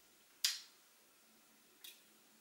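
Two short wet mouth clicks, lip smacks from a man tasting whisky: a louder one about half a second in and a fainter one near the end.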